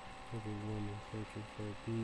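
A man's voice spelling out a word letter by letter in short, separate syllables, over a faint steady high-pitched hum.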